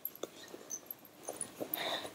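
Faint, scattered light clicks and rustles of small items being handled while rummaging in a handbag.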